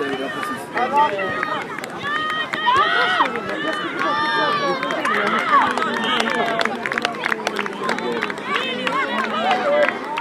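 Many overlapping voices of children and sideline spectators shouting and calling across a rugby pitch. Scattered hand claps join in during the second half.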